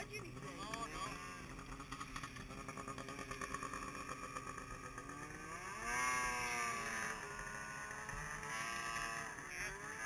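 Snowmobile engine revving, its pitch rising and falling in long sweeps as the sled climbs away up the slope, louder from about six seconds in.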